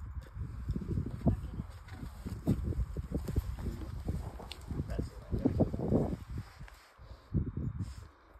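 A climber's hard breathing and grunts of effort while moving through the rock roof, with scuffs and knocks of hands and shoes on the rock, and a louder strained vocal sound around five to six seconds in.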